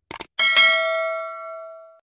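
Subscribe-button sound effect: a few quick mouse clicks, then a single bell ding about half a second in that rings on and slowly fades.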